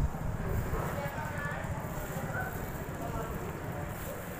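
Faint, indistinct voices of people talking in the background over a steady low rumble.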